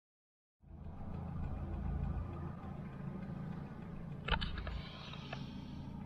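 1992 Volvo 940 Turbo's turbocharged four-cylinder engine running steadily, a low rumble heard from inside the cabin, with a single sharp click a little over four seconds in.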